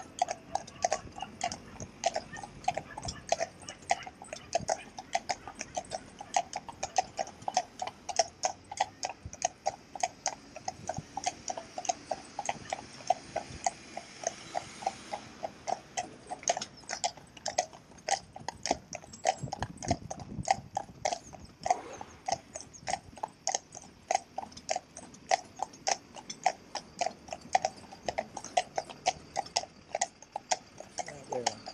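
Shod hooves of a pair of Friesian stallions clip-clopping on a tarmac road, an even run of several hoofbeats a second. Passing traffic adds a hiss and low rumble about halfway through.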